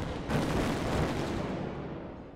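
Explosion: a sudden blast about a third of a second in, followed by a rumble that slowly dies away.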